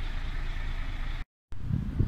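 A truck's diesel engine idling steadily, heard from inside the cab. About a second in it cuts off abruptly, and irregular low rumbling noise follows.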